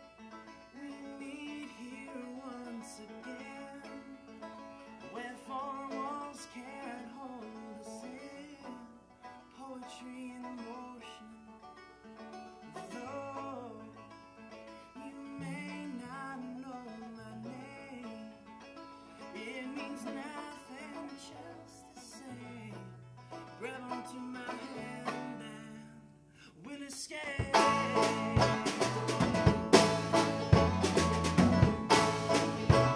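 A bluegrass-style band intro: mandolin and banjo pick a quiet melody, with electric bass notes coming in about halfway through. Near the end the full band, drum kit included, comes in much louder.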